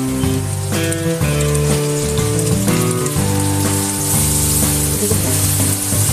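Instrumental background music with changing sustained notes, over the sizzle of rohu fish roe and onions frying in a pan; the sizzle grows brighter about four seconds in.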